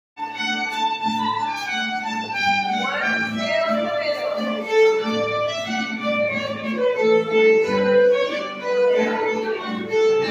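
A small live band led by violins plays a lively English country dance tune, the fiddle melody moving over a steady pulsing lower accompaniment.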